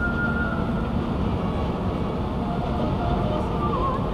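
Steady road and engine noise of a car cruising at highway speed, heard from inside the cabin, as it overtakes a semi-trailer truck. A faint wavering tone sits over it near the start and again near the end.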